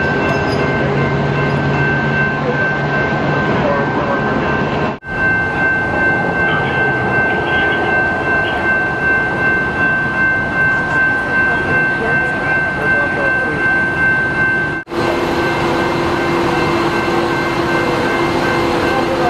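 Steady hum of idling machinery with a constant high-pitched whine, cut off abruptly twice. In the middle stretch the level pulses about twice a second.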